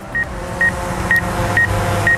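Short high beeps about twice a second from the drone controller's obstacle-avoidance warning, which signals an obstacle such as a tree within about ten feet. Under them runs the steady hum of a DJI Phantom 4's propellers in flight.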